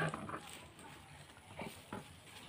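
Clear plastic candy wrappers rustling faintly as they are handled. Two short light knocks come near the end, and a louder sound fades out in the first moments.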